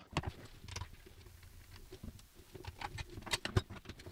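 Quiet handling noise from the bottom cover of a Minisopuru iExpandMate dock being taken off: faint rubbing and scattered small clicks, more of them near the end.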